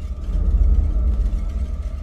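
A deep, steady low rumble from a cinematic soundtrack, with a faint thin tone above it.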